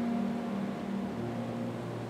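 School concert band playing a soft passage of sustained notes; a low held note enters about a second in as a mid-range note fades.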